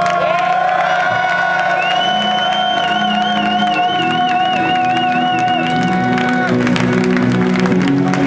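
Heavy metal band's closing chord held and ringing out through the PA, with a high wavering note above it. The held notes stop about six and a half seconds in, leaving the crowd cheering and clapping.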